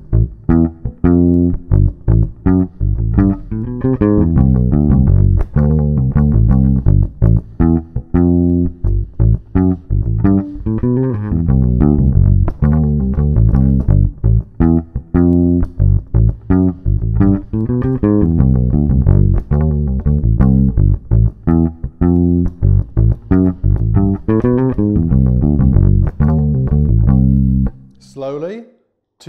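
Solo Fender Precision-style electric bass played fingerstyle: a fast rock riff in D built on string skipping, with quick slides and pull-offs, running in an even, driving rhythm and stopping just before the end.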